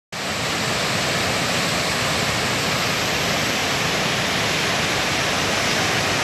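Steady, loud rush of floodwater pouring over a concrete dam spillway swollen by typhoon rains. It cuts in abruptly right at the start.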